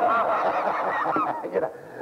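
A congregation of many voices calling out "Glory!" at once in answer to the preacher, overlapping, and dying away after about a second and a half.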